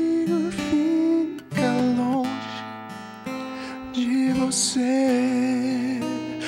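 Live acoustic music: a man singing long, slightly wavering held notes over a strummed acoustic guitar. The playing softens for a moment in the middle, then the voice comes back in.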